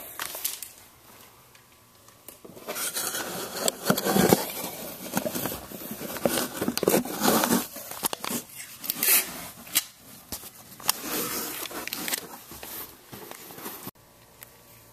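Cardboard boxes being handled and shifted into place: irregular rustling, scraping and knocks that start about two and a half seconds in and carry on until near the end.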